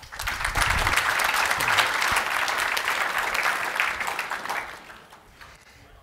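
Audience applauding, starting at once and dying away about four to five seconds in.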